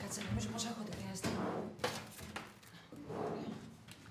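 Paper rustling and a couple of light clicks as a paper packet and small objects are handled on an office desk.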